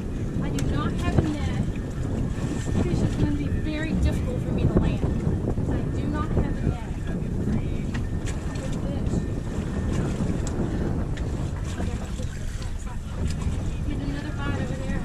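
Wind buffeting the microphone in a steady low rumble on an open boat, with water washing around the hull and a few faint scattered clicks.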